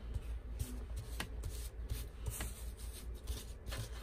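Paper die-cut ephemera pieces rustling and sliding against each other and the tabletop as a hand sorts through a pile of them, with a couple of light ticks.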